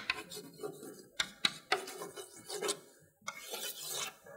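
Chalk writing on a blackboard: scratchy strokes punctuated by sharp taps as the chalk strikes the board, then a longer, steadier scrape near the end.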